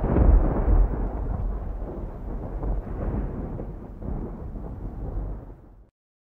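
Thunder sound effect: a deep rumble that is loudest at the start and slowly dies away, fading out just before the end.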